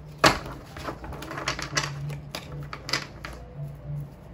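Tarot cards being shuffled and handled: a loud snap about a quarter of a second in, then a run of irregular clicks and flicks of the cards.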